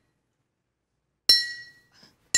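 A glass bottle played as a musical instrument, struck once about a second and a half in, ringing with a clear high note that dies away within about half a second.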